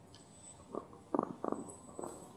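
Handheld microphone being passed along and handled: a few short, muffled bumps of handling noise, bunched together a little after a second in.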